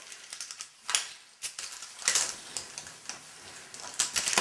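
Irregular clicking and clattering of a hand-held object being handled, with louder rustling bursts about one second and two seconds in.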